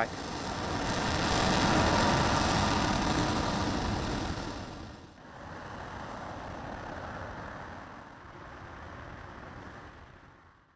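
RS-25 liquid-hydrogen rocket engine firing on a test stand, a steady, loud rushing noise of the exhaust. About five seconds in the sound drops to a quieter, duller rumble that fades near the end.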